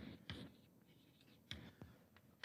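Chalk on a blackboard, faint: a few short taps and scratches as a line of writing is finished.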